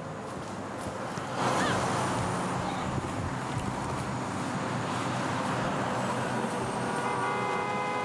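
Road traffic noise that grows louder about a second and a half in, with a car horn sounding steadily near the end.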